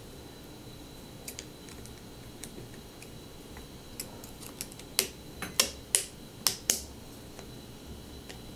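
Small sharp metal clicks as a screwdriver and pin are worked against the internals of a SRAM Force 22 DoubleTap shifter: a few faint ticks, then a quick run of louder clicks in the second half.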